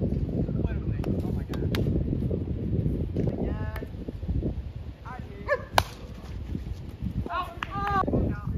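Wind buffeting the microphone with a steady low rumble, and faint voices calling across the yard. About six seconds in comes a single sharp smack of the plastic wiffle ball being struck, the loudest sound.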